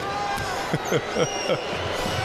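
Broadcast commentators laughing in short, falling bursts over the steady murmur of an arena crowd.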